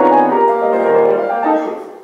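Piano playing, several held notes sounding together, with a last note struck about a second and a half in and the sound fading away as the passage ends.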